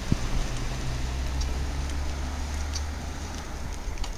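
Street noise with a motor vehicle's engine running steadily as a low hum, which fades out near the end.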